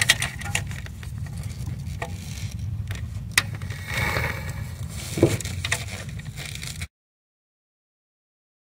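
Metal clicks of a wrench on a car's clutch-line bleed valve, with old fluid and air being pushed out through the clear bleed tube into the bottle, over a steady low rumble. The sound cuts off abruptly a second or so before the end.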